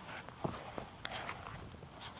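Footsteps on a damp sandy ground, with a few short, light clicks and scuffs spaced out over the two seconds.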